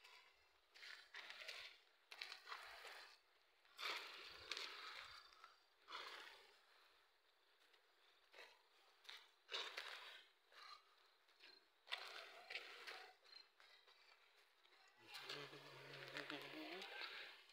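Faint outdoor ambience broken by irregular short bursts of noise every second or two. A person's voice starts near the end.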